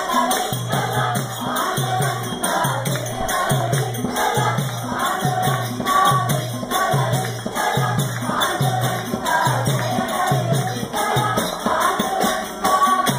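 A group of men singing a devotional bhajan together in chorus, with jingling hand percussion and a steady low beat keeping time.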